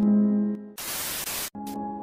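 Background music with held notes fades out and gives way to a short burst of static hiss, about three-quarters of a second long, that cuts off sharply as the music comes back on new notes: a static-noise transition effect between clips.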